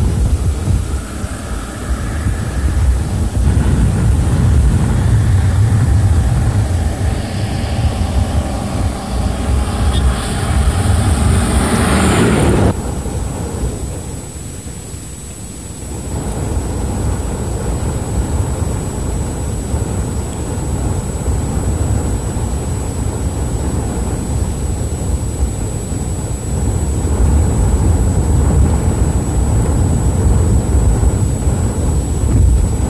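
Vehicle engines with a low, wind-like rumble. A bus engine grows louder as it approaches and cuts off abruptly about twelve seconds in. After a dip, a lower rumble of off-road vehicles builds again toward the end.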